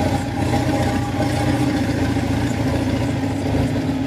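Diesel engine of a tracked Kubota rice carrier running steadily as the crawler moves over a dyke under a full load of rice sacks. It is a constant, even engine note over a low rumble.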